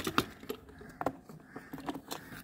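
Light clicks and taps of plastic dollhouse pieces being handled: a handful of irregular knocks as a doll figure and a toy chair are moved about.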